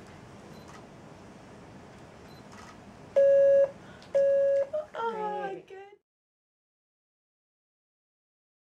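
Two short electronic test beeps about a second apart, each a steady mid-pitched tone lasting about half a second, played as listening-training cues for a child learning to respond to sound. A voice exclaims right after the second beep, then the sound cuts off suddenly to silence.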